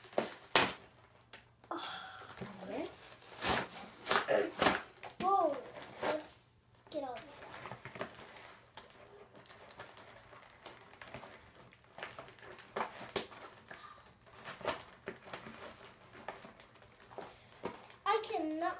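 Cardboard and plastic toy packaging being handled and pulled open by hand: scattered crinkles, rustles and taps throughout, with a child's voice in the first few seconds.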